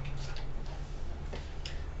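A deck of tarot cards being shuffled by hand: a few light, irregular clicks of cards slipping against each other.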